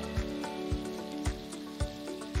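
Pineapple pieces sizzling in butter in a frying pan, with background music with a steady beat about twice a second over it.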